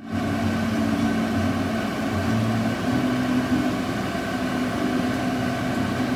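Steady hum inside a stationary car's cabin with the engine running, a few steady tones over an even rush, typical of an idling engine and the air-conditioning blower.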